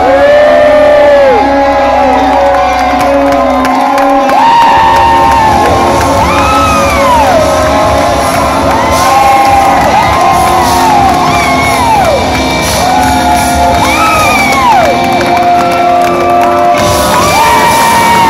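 Live rock band sustaining the closing of a song, its low bass dropping out about four seconds in and coming back near the end, while a crowd cheers and whoops loudly over it.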